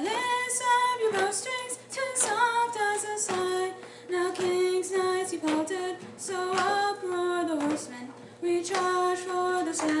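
A woman singing a verse of a ballad solo and unaccompanied, in phrases of long held notes with short breaths between them.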